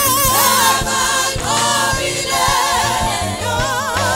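A gospel choir and congregation singing a praise song in isiZulu together, many voices at once, with wavering held notes.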